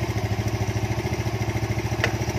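Bored-up Honda Grand single-cylinder four-stroke engine idling steadily, with an even beat of about a dozen firing pulses a second. It runs on an aftermarket camshaft and a Vario 125 piston.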